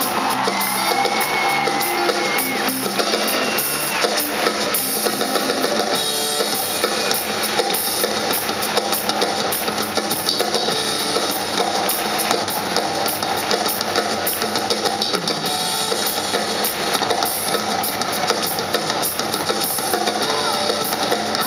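Live band playing amplified through a concert PA, the drum kit to the fore with cymbals and guitar over it, steady and loud.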